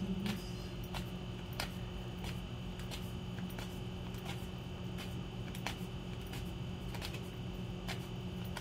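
A deck of tarot cards being shuffled by hand, the cards giving light clicks and snaps about once or twice a second, over a steady background hum.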